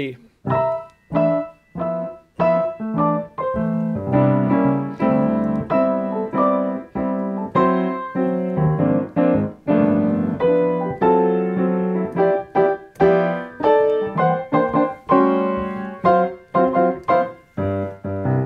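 Grand piano played in block-chord style: a melody in the right hand with full chords struck under each melody note, a steady run of chords roughly two a second.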